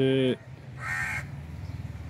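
A single harsh bird call, about half a second long, about a second in.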